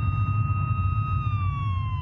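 An emergency-vehicle siren sounding one long held note that slides down in pitch in the second half, over a low rumble and a steady high ringing tone.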